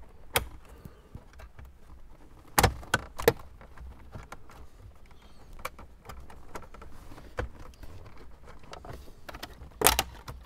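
Plastic dash trim cover being pressed and snapped into place on a Toyota 4Runner dashboard: scattered sharp clicks and knocks as its clips seat, loudest about two and a half seconds in and again near the end.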